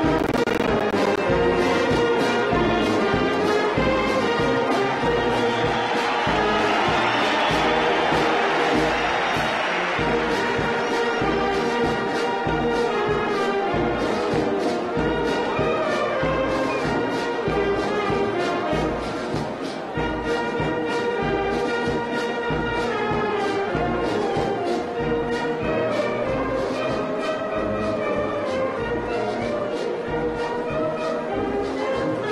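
Military brass band playing a march, brass instruments holding sustained chords over a steady drum beat.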